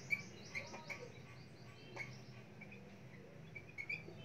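Felt-tip marker squeaking and tapping on a whiteboard as words are written: short high squeaks and sliding chirps with a few sharp ticks, over a faint steady room hum.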